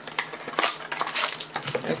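Cardboard trading-card boxes being handled on a table, with loose plastic shrink wrap crinkling: a quick, uneven run of small taps and crackles.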